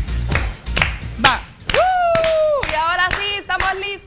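Electronic dance music with a deep beat that stops about a second in, followed by hand clapping and voices: one long drawn-out vocal call about halfway through, then lively chatter over continued claps.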